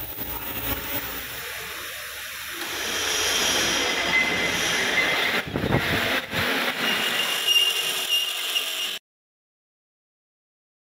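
Steady crackling hiss of an arc welder at work. About five or six seconds in it gives way to the uneven rasping of a hand file on steel held in a bench vise. The sound cuts off abruptly about a second before the end.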